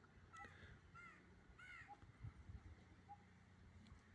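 Faint bird calls: three short, arching calls in the first two seconds, with a few tiny single notes after them.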